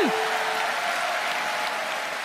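Audience applauding, steady and slowly fading, with the tail of a woman's voice at the very start.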